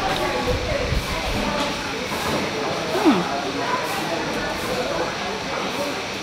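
Steady hissing room noise with faint, indistinct voices in the background.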